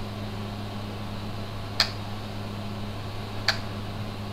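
Steady low hum of room equipment with two short, sharp clicks about a second and a half apart.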